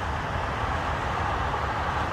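Steady road-traffic noise, a low rumble and hiss with no distinct events.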